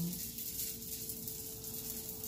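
Sausage frying in a pan, a soft steady sizzling hiss, with a faint steady hum underneath.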